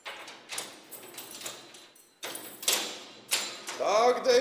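A double door being forced by shoulder and hand: a run of thumps and rattles, louder a little past halfway, as it gives way and swings open. A man's voice starts right at the end.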